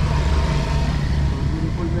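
Steady low rumble of a moving vehicle heard from on board, with wind on the microphone.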